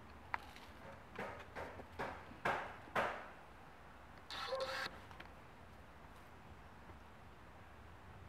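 Kittens scrambling on wooden planks and a rope-and-plank ladder: a string of short scratches and knocks, loudest near the middle, then a brief rustle a little after four seconds.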